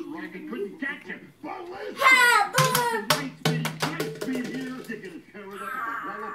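Soundtrack of an animated film playing on a TV: voices with music. About two seconds in there is a loud, high-pitched cry that falls in pitch, followed by a quick run of sharp strokes.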